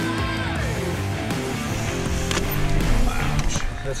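Background music with steady held notes over a bass line.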